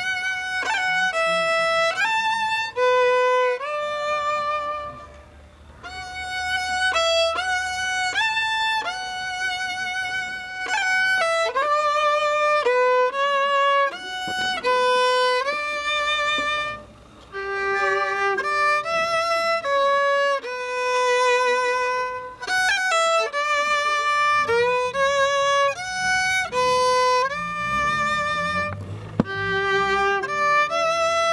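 A violín chapaco, the Tarija folk fiddle, playing a solo melody for the Easter coplas. The notes are held and some waver with vibrato. The tune breaks off briefly twice, at the ends of phrases.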